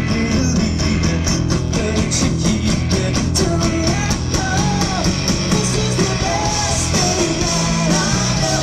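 Live pop-punk band playing loud through a festival PA: electric guitars and bass under a steady drum beat, with a sung vocal line, heard from within the crowd.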